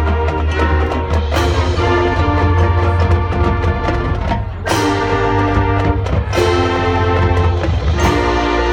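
Marching band playing: brass chords held over drums and front-ensemble percussion, with strong bass underneath. Sharp full-band accents land about a second and a half in and again near five seconds.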